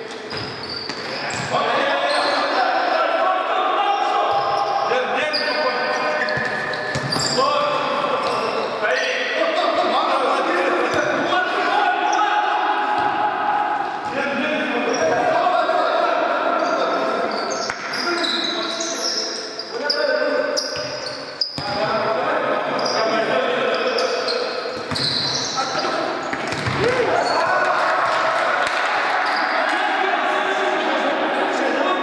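A futsal ball being kicked and bouncing on a hard sports-hall floor, with sharp echoing thuds among players' shouted calls that run on throughout.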